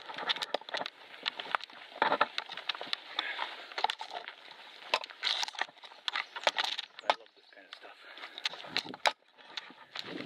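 Footsteps pushing through forest undergrowth, with twigs and dry branches crackling and snapping in a string of sharp clicks, and foliage rustling and brushing past the microphone.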